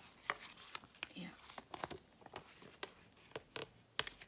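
Black duct tape being pressed and folded by hand over the edge of a clear plastic folder: a run of irregular small crackles and clicks from the plastic and tape.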